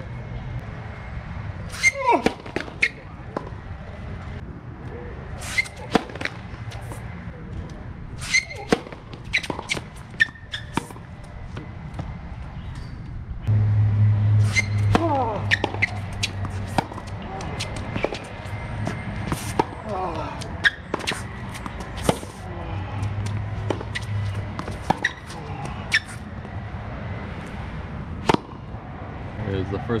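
Tennis balls struck by rackets in hard-court rallies: sharp hits a second or so apart, some runs of exchanges broken by short gaps, with a player's grunts on some shots.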